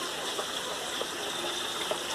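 Steady running water from a backyard aquaponics system, water splashing and gushing continuously.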